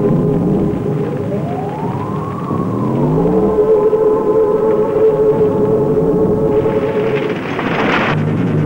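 Eerie soundtrack music of sustained, drone-like tones, with a slow sliding pitch that rises and falls between about one and three and a half seconds in. Near the end a rising swell of noise builds and cuts off suddenly.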